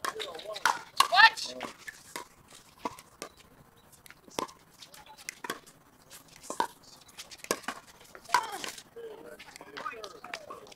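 Pickleball paddles striking the hard plastic ball in a rally: a string of sharp pops, about one a second, along with a few brief voices.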